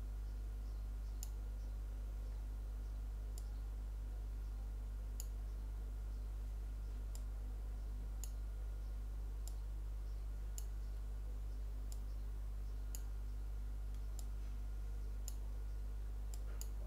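Computer mouse clicking, about a dozen sharp clicks spaced one to two seconds apart, over a steady low electrical hum.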